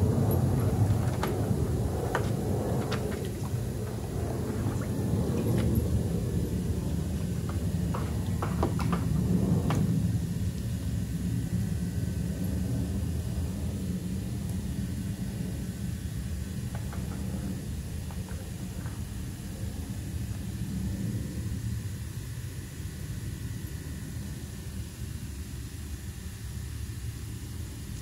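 Dog pawing and splashing at the water of a plastic kiddie pool, a scatter of short splashes over the first ten seconds or so, over a steady low rumble that carries on throughout.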